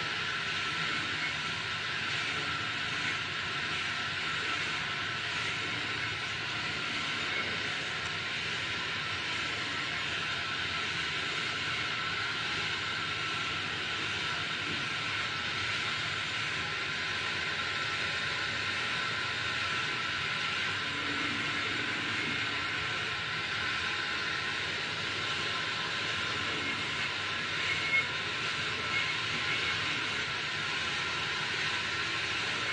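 A steady, even hiss that holds unchanged throughout, with one faint tick near the end.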